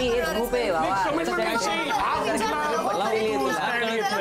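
Speech only: several people talking over one another in a heated argument.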